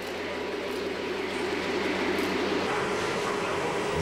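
Model electric toy train running on track: a steady rolling rumble with a low motor hum.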